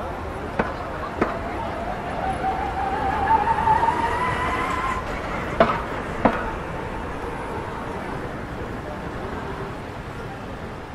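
Street traffic: a car passes close by, with a whine that rises steadily in pitch over a few seconds. Four short sharp knocks, two in the first second or so and two a little past halfway, sound over a background of people's voices.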